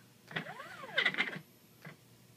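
Triple-stack NEMA 17 stepper motor driving a leadscrew actuator carriage through a fast move: a whine that rises in pitch and falls back as it speeds up and slows down, then a short burst of clicking rattle about a second in. The stepper driver current has not yet been adjusted for these motors.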